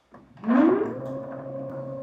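NEMA 23 stepper motor spinning the 3D-printed tank turret: a whine that climbs in pitch for about half a second as the motor accelerates, then holds a steady tone at full speed, over the mechanical noise of the rotating turret.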